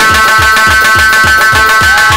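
Wedding band music led by doira frame drums: deep drum strokes at a steady pace of about four a second under a long-held high chord.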